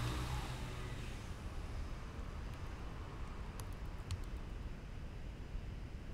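Handling noise as a charger cable and plug are fiddled with at the recording device: rustling at the start and a few faint clicks around the middle, over a steady low rumble.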